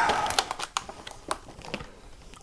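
Clear plastic blister packaging of a pair of headphones being handled and pried open, giving a scatter of small, sharp plastic clicks and crinkles.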